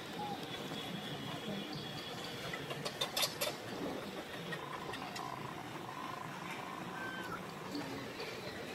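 Baby macaque giving short, thin, mewing calls, the clearest in the second half, one gliding up and down near the end. A quick cluster of sharp clicks about three seconds in.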